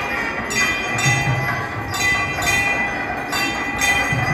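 Temple bells clanging in a steady, repeated rhythm, about three strikes every two seconds, each strike ringing on with a bright metallic tone.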